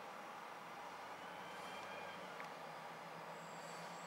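Faint, steady outdoor street ambience: a low hum under an even noise haze, with a thin, high insect-like tone coming in near the end.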